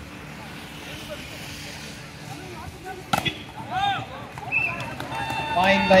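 Outdoor volleyball match ambience: a low murmur of spectators' voices, then one sharp smack about three seconds in followed by shouts. A voice starts calling near the end.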